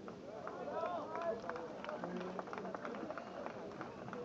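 Tennis crowd chatter: many spectators' voices overlapping, with scattered sharp clicks through the middle.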